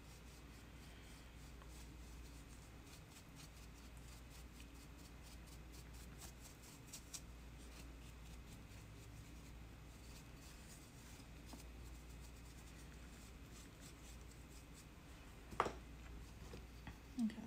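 Faint scratchy strokes of a small brush working dry trimming scraps of clay out of the carved openings of a clay candle holder, quick and light in the first half and sparser later. A sharp click comes shortly before the end.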